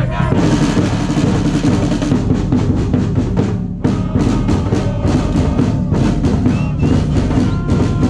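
Large bass drum beaten rapidly and repeatedly with a soft-headed mallet in a rolling drum rhythm, with a short break about four seconds in.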